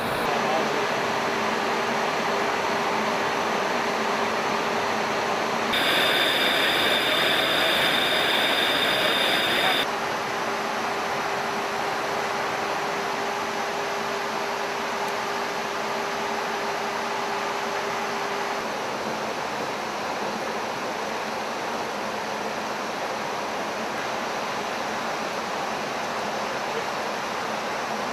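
Steady rushing in-flight noise in a Boeing E-3 Sentry's cockpit, airflow and jet engines, with a faint steady hum. About six seconds in it gets louder for about four seconds with a higher whine over it, then drops back to the steady rush.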